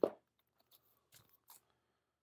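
Vinyl LP jackets being handled and pulled from a record bin: a short knock and rustle at the start, then a few faint clicks and crinkles.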